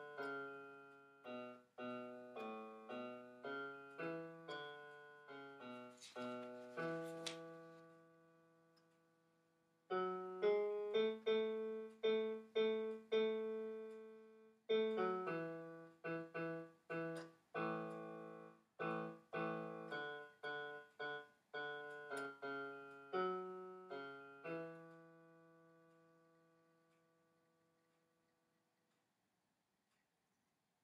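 Digital keyboard in a piano voice playing a choir's bass part as a rehearsal line, one struck note after another with other notes sounding alongside. It pauses on a held note that dies away about eight seconds in, resumes about ten seconds in, and ends on a held note that fades out over the last few seconds.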